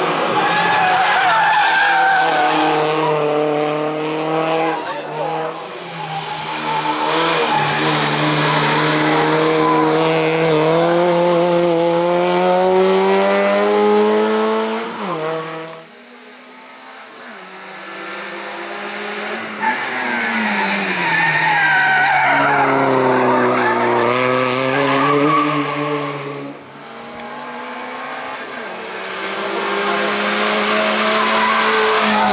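A small hatchback hill-climb race car's engine is pulled hard uphill: its pitch climbs through each gear and falls back at every upshift. About halfway through, the sound drops away suddenly, then builds again as the car approaches from farther off, easing off and picking up again through the bends.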